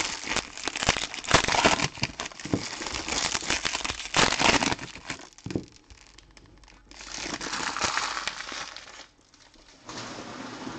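Trading-card pack wrappers crinkling and tearing as they are ripped open by hand, dense and crackly for the first five seconds, then quieter, with one more stretch of crinkling about seven seconds in.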